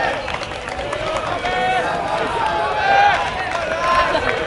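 Several distant voices shouting and calling across an outdoor soccer pitch, short calls overlapping one another over open-air background noise.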